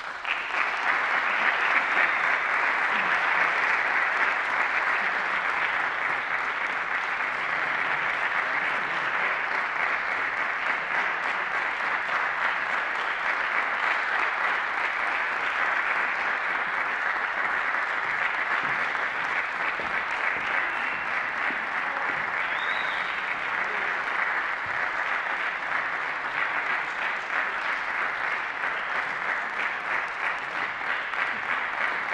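Concert audience applauding, breaking out suddenly at the start and going on steadily.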